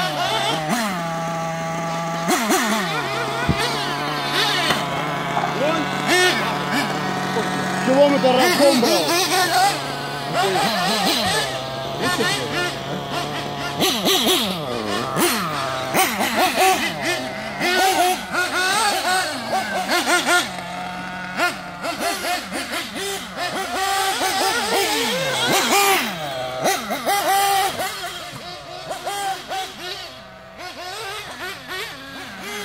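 Small glow-fuel engines of 1/8-scale nitro RC buggies running, their high whine rising and falling over and over with the throttle as the cars drive.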